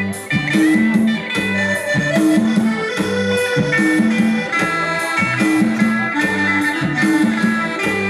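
Yamaha arranger keyboard playing dance music: a sustained melody over a steady, repeating bass beat.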